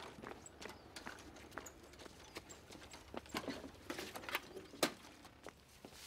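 Hard-soled dress shoes stepping on a brick path: a run of sharp, uneven footsteps, with one louder step near the end.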